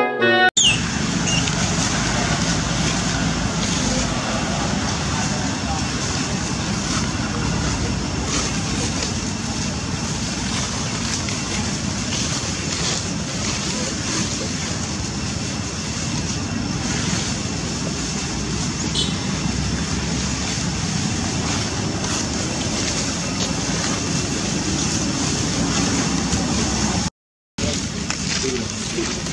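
Steady outdoor background noise, a dense even hiss with no distinct events, broken by a brief silence near the end where the footage cuts.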